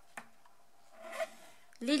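Faint scraping of a stylus tip drawn along a metal ruler, scoring a hinge fold line into laminated card, with one light click just after the start and a slightly louder scrape about a second in. A woman's voice starts near the end.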